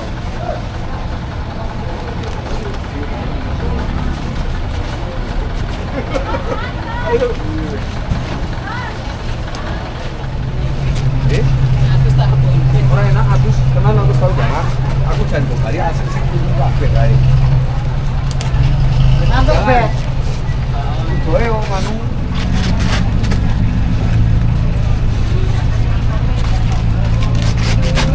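Busy market background with people's voices; from about ten seconds in, a vehicle engine runs steadily with a low hum under the voices.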